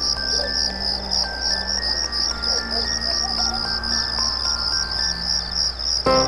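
Crickets chirping in a steady, even pulse, as a night-time sound effect over soft sustained background music.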